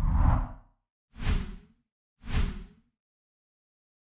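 Whoosh sound effects for an animated logo: one longer swelling whoosh, then two shorter swooshes about a second apart.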